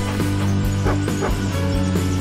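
Background music with a dog barking twice about a second in.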